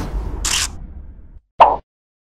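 On-screen animation sound effects: a swish that fades away, then a single short pop about a second and a half in.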